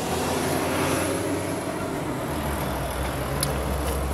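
Steady motor-vehicle rumble with a hiss over it, and a single short click about three and a half seconds in.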